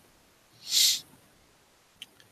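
A single short, breathy hiss of about half a second, about a second in: a breath let out close to a headset microphone.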